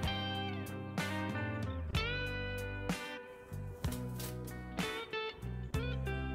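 Background music led by guitar, with a note or chord struck about once a second and some notes bending in pitch.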